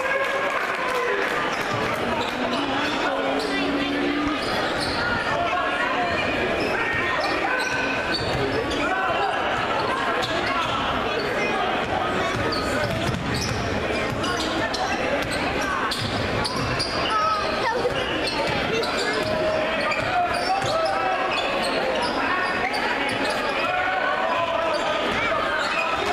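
A basketball being dribbled on a hardwood gym floor during live play, under a steady babble of crowd and player voices in a large gym.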